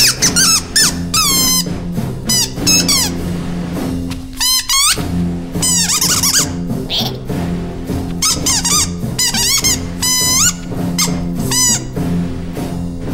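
Background music with clusters of short, high squeaks that bend up and down in pitch, coming in quick runs again and again.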